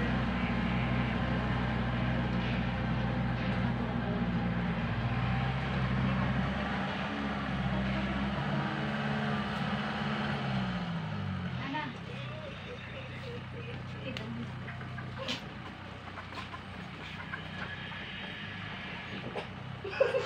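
A motor engine running steadily at a low, even pitch; about ten seconds in its pitch slides down and it fades away, leaving a quieter background with a few faint clicks.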